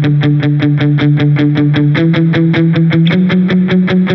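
Electric Telecaster-style guitar on its bridge pickup, played through a Line 6 Helix patch, picking a steady run of about eight notes a second on the chord tones. The chord changes about two seconds in and again about three seconds in.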